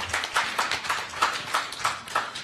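Audience applauding: many hand claps overlapping in a dense, irregular patter.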